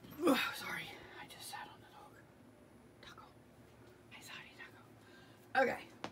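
A woman's quiet, mumbled and whispered speech in a few short phrases, too low for the words to be made out.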